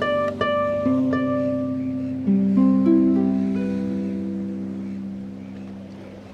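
Slow, gentle solo harp music. A few plucked notes come in the first second, a low chord about two seconds in, and then the strings ring on and slowly fade.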